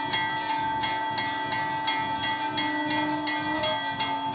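Large hanging brass temple bell rung without pause, struck about three times a second so that its ringing tones never die away between strokes.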